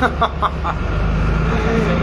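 City bus engine's low steady drone heard from inside the cabin, getting louder about two-thirds of a second in, with a man's short laugh at the start.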